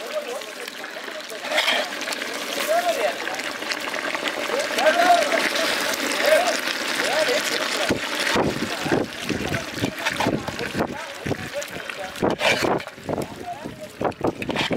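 A man talking, with a steady rushing noise underneath during the first half.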